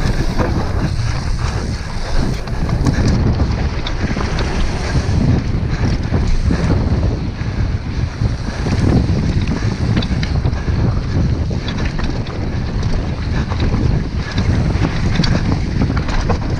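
Wind rushing over an action camera's microphone on a fast downhill mountain-bike descent, a loud steady rumble, with the tyres running over the dirt trail and the bike rattling in many small clicks.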